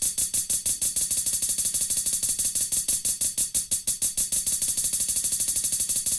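Software drum machine (Illmatic Drum Machine) playing a closed hi-hat sample as a fast arpeggiated roll in 1/32 notes at 94 BPM, about a dozen hits a second, with swing applied.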